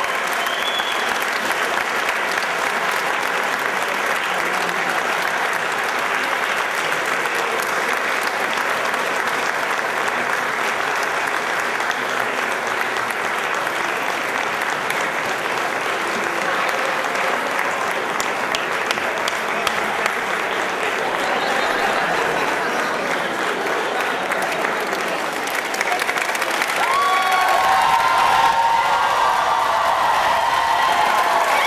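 Audience applauding steadily and at length.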